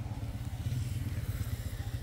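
Steady low rumble of a small engine running nearby, with a fast even pulsing.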